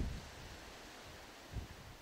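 Faint wind and rustling of trees picked up by a shotgun microphone in a furry dead-cat windscreen, with a soft low wind rumble and one brief low swell about one and a half seconds in.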